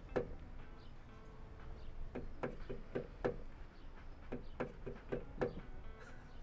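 A run of light knocks and clicks, a few a second and unevenly spaced, at a low level.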